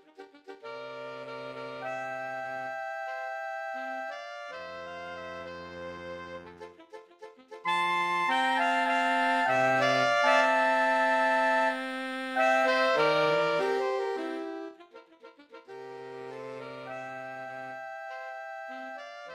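Saxophone quartet of soprano, alto, tenor and baritone saxophones playing held chords that move in steps. Soft at first, then a loud, full passage from about eight seconds in to about fourteen, then soft again near the end.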